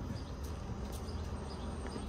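A flying insect buzzing close to the microphone over a steady low rumble.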